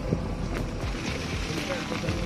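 Maruti Suzuki Alto 800's small three-cylinder petrol engine running with a steady low rumble, with wind buffeting the microphone.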